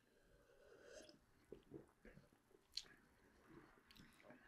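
Near silence with faint sips and swallows from two people drinking soda from glasses, and one light click a little under three seconds in.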